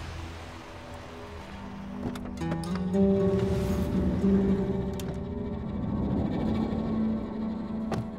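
Background drama score of sustained low held notes that swells in about two and a half seconds in, with a few short clicks, the sharpest near the end.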